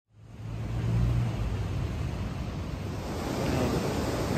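Steady wash of surf with low wind rumble on the microphone.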